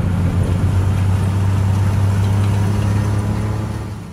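John Deere 9RX 830 tracked tractor pulling a disc harrow at working speed: a steady low engine drone that fades out near the end.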